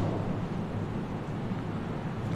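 Steady room tone: a low electrical hum and even hiss, with no distinct event.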